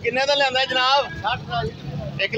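A goat bleating once: a quavering call about a second long, over the chatter of a crowded livestock market.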